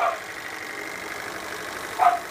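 Small model steam engine running steadily on about 40 psi of boiler steam: a fast, even beat of exhaust puffs over a steam hiss.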